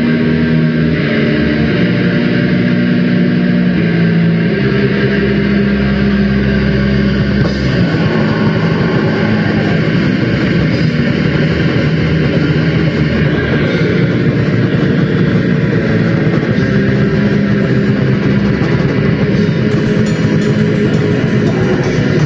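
Black metal band playing live in rehearsal: distorted electric guitar and bass hold slow chords, changing every couple of seconds, then about seven seconds in the band breaks into a dense, driving section with drums. Near the end, regular cymbal strokes sound above it.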